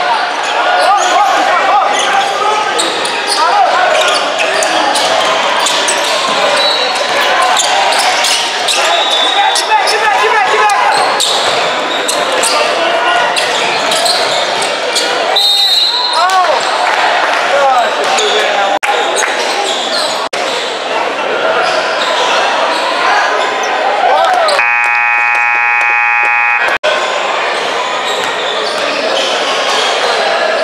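Indoor basketball game: sneakers squeaking on the hardwood court, the ball bouncing, and voices from players and spectators echoing through the gym. Short referee whistle blasts come a few times, one about halfway through. A scoreboard buzzer sounds steadily for about two seconds near the end.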